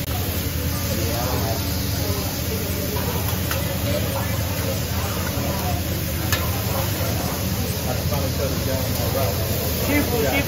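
Food sizzling on a hibachi flat-top griddle while a metal spatula scrapes and pushes it, with a couple of brief taps. Background chatter and a steady low hum run underneath.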